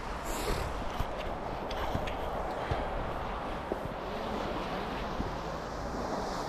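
Snowboard sliding down a groomed run: a steady scraping hiss of the board on packed snow, with a few faint ticks.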